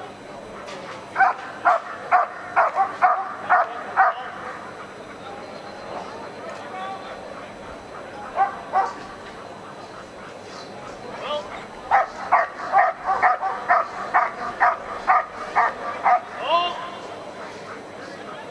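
A dog barking in quick, even runs of about three barks a second: a run of about ten barks soon after the start, two more midway, and a longer run of about fourteen in the second half.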